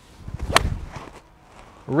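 A golf iron swung at full speed: a brief whoosh building to the sharp strike of the clubface on the ball about half a second in, then a short fading tail.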